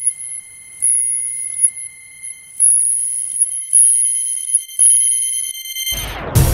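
Plasma globe giving off a steady high-pitched electronic whine made of several thin tones, with a still higher, brighter whine that comes and goes about four times. It cuts off suddenly near the end.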